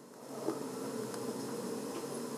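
A steady low buzzing hum that fades in over the first half second, with a couple of faint clicks.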